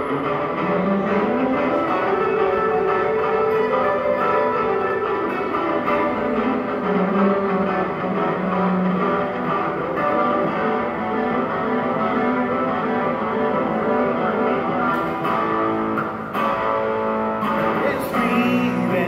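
Electric guitar played live through an amplifier and a loop pedal, with sustained chords layered over repeating looped guitar parts and some notes gliding slowly up and down in pitch.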